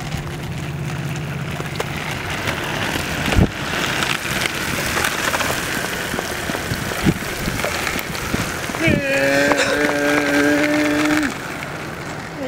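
Hoverboard wheels rolling over wet asphalt with a steady hiss, a low hum at the start and a single thump about three and a half seconds in. Near the end, a long held shout lasting a couple of seconds.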